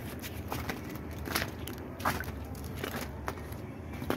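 Footsteps on wet slush and snow, a short crunching step roughly every two-thirds of a second.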